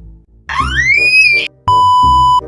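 A comedic sound effect over a background music beat: a whistle-like tone that rises in pitch and then cuts off. Near the end it is replaced by the steady, loud test-card beep of a TV colour-bars screen.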